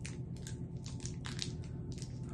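Small candy wrapper crinkling as it is peeled off a chewy ginger candy that sticks to it: a run of irregular crackles.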